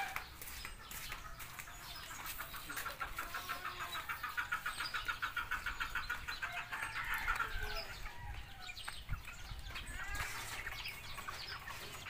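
Chickens clucking, with a fast, even run of short clucks for several seconds in the middle.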